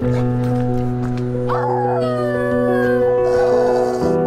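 Background music with sustained, held tones. About one and a half seconds in, a long howl-like call with overtones slides slowly down in pitch over the music and fades out near the end.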